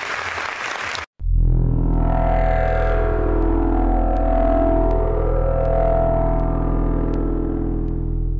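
Audience applause that cuts off abruptly about a second in. Then a music jingle starts, with a steady low drone under slow sustained tones.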